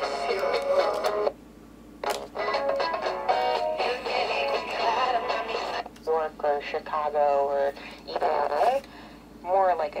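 Small speaker of a miniature FM auto-scan radio playing snatches of broadcast music with singing and talk, going quiet briefly twice, about a second in and near the end, as the scan jumps to the next station. The sound is thin with almost no bass, and sibilant and distorted.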